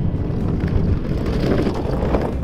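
An ice boat's runners scraping and rumbling over lake ice as it sails close past, a rough, steady noise that builds as it goes by, with wind on the microphone.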